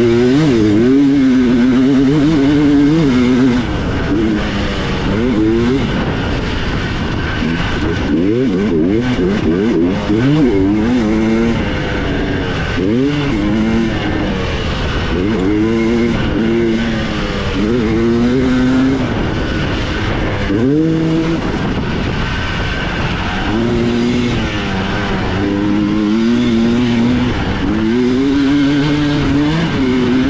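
Two-stroke dirt bike engine, heard from on the bike, revving hard and falling off over and over as the rider accelerates, shifts and backs off through the track, its pitch climbing and dropping many times.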